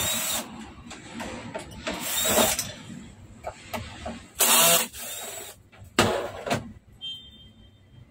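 Cordless drill-driver backing screws out of a flat-screen TV's plastic back cover: the motor whirs in about four short runs, roughly two seconds apart, the one about halfway being the loudest, with small clicks and knocks between them.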